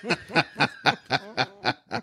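Laughter: a steady run of short, breathy laughs, about four a second, tailing off near the end.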